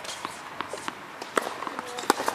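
Tennis ball being bounced on a hard court before a serve, a few short thuds with the clearest about one and a half seconds in.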